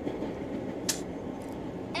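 Steady low outdoor rumble, with one sharp click just under a second in.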